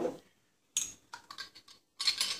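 Light kitchen handling noises from items at a foil-lined roasting pan: a short crinkle less than a second in, then a quick run of small clicks and taps.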